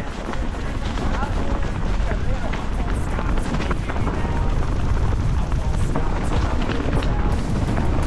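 Mountain bike descending a loose, stony trail: tyres crunching over stones and the bike clattering with many short knocks, over a steady low rumble of wind buffeting the microphone.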